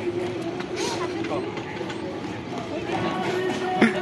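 Background chatter of several voices across an open training ground, over a steady low hum, with a single sharp knock near the end.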